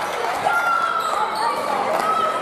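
Girls' voices shouting and cheering in a large sports hall, with a sharp knock about half a second in.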